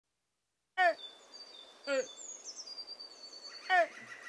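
Birdsong: three loud, short calls, each falling in pitch, with thin high whistling notes held between them.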